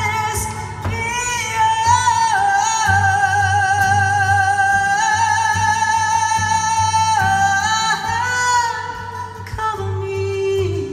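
A woman singing long, held high notes live over a strummed acoustic guitar.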